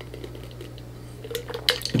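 A man drinking from a glass mason jar: quiet sips with a few faint clicks of the glass in the second half, over a steady low hum.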